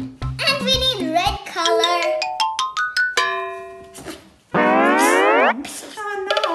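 Children's background music with a steady beat that stops about a second and a half in, followed by cartoon sound effects: a quick rising run of notes, a held chime-like chord, then a loud rising glide in pitch like a boing.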